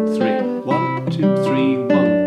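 A nylon-string classical guitar played fingerstyle, picking out chord notes one string at a time. The notes come several a second in an uneven rhythm that mixes quavers and semiquavers, played slowly.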